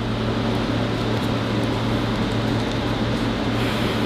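Steady low hum and hiss of room air conditioning running.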